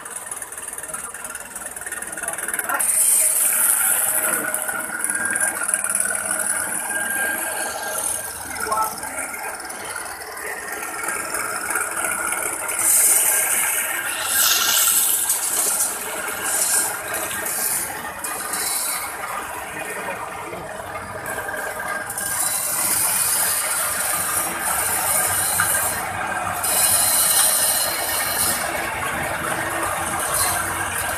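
Electric coffee grinding machine running while coffee beans are fed into its steel hopper: a steady mechanical grinding and rattling of beans being crushed. It grows louder in several stretches as more beans go in.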